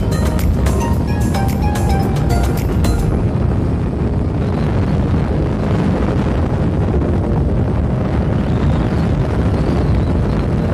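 Background music with a beat that stops about three seconds in, laid over a steady, loud rush of wind buffeting the microphone on a moving motorcycle.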